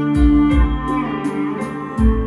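An instrumental stretch of a song played back through a pair of JBL G2000 Limited floor-standing loudspeakers, with a sustained bass line, held notes and a low beat. There are no vocals in this stretch.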